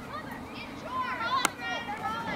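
High-pitched voices of girls and spectators shouting and calling across a soccer field, one call held for a moment near the end. A single sharp knock sounds about one and a half seconds in.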